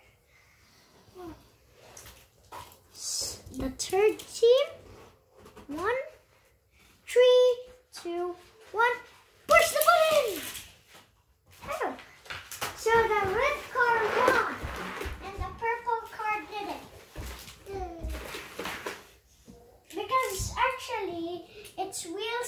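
Young children's voices talking and babbling indistinctly, with a few short knocks and rattles in between.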